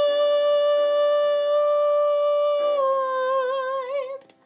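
A woman's voice holds the song's last sung note, steady at first, then dropping slightly and wavering with vibrato near the end before it stops, over sustained piano chords that change twice beneath it.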